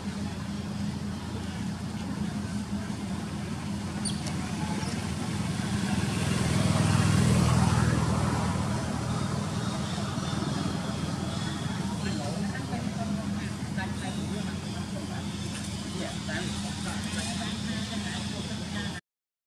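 Outdoor background noise with a steady low hum and a motor vehicle passing by, growing louder about six seconds in and fading away after eight.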